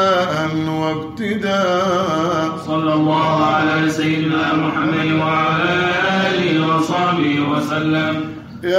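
Men's voices singing a Sufi devotional qasida (inshad) in Arabic, with long, ornamented held notes and brief breaks for breath.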